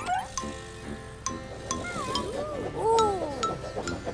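Light cartoon background music with chiming, clinking notes, joined in the second half by a few arching gliding tones, the loudest about three seconds in.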